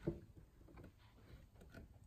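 Quiet room tone with a few faint small clicks.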